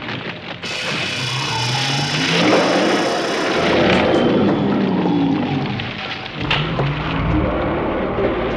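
Film soundtrack sound effects: a loud, rough roar starts about half a second in, its pitch sliding up and down, with a few sharp knocks. A deep rumble comes in near the end.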